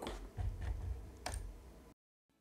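A few faint clicks at a computer desk, the sharpest a little past halfway, over a low room rumble.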